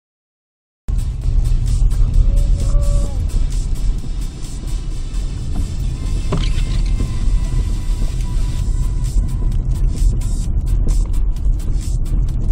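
Car cabin noise while driving slowly: a steady low rumble of engine and tyres on the road, picked up by a phone's microphone, starting after about a second of silence. A sharp knock sounds about six seconds in.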